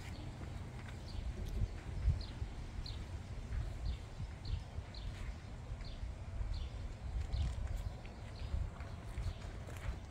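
A songbird calling over and over with short, high, falling chirps, roughly one every half second to second, over a steady low rumble.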